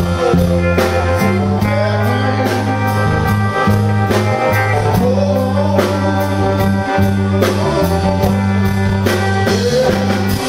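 Live blues-rock band: a male vocalist singing over electric guitar, electric bass and drums, with a steady beat.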